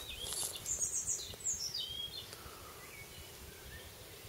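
A songbird chirping: a quick run of high chirps falling in pitch about a second in, then a few fainter calls, over steady outdoor background noise.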